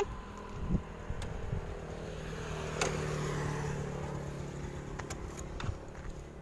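A road vehicle passing on the highway, its engine and tyre noise swelling about halfway through and then fading, with a few faint clicks.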